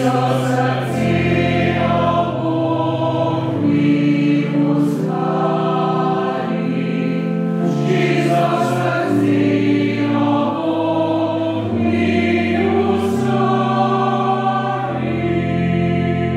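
A choir singing a sacred hymn in slow, held chords that change about every second, as one unbroken phrase.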